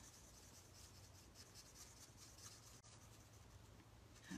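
Near silence with the faint scratch of a marker's broad felt tip rubbing over cardstock as a stamped image is coloured in.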